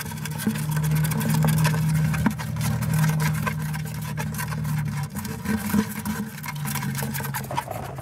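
An eastern mole's claws scratching and scrabbling on the bottom of a plastic bucket, as a run of short scratchy clicks. A steady low engine hum runs behind it and drops out for a moment past the middle.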